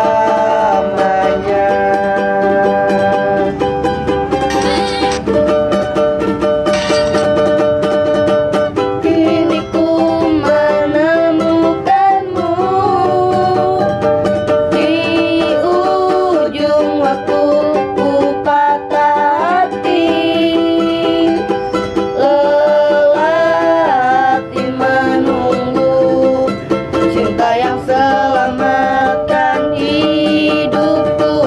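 A ukulele strummed to accompany a young man singing an Indonesian pop song, with a young woman's voice joining near the end.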